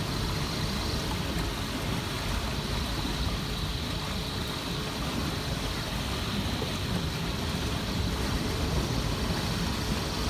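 Strong, gusty wind buffeting the microphone as a steady low rumble, over water rushing past the hull of a sailing yacht under way.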